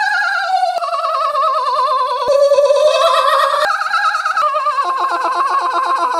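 A man's exaggerated, obnoxious laugh held as one long high-pitched warbling wail without a break for breath, trembling rapidly and stepping up and down in pitch.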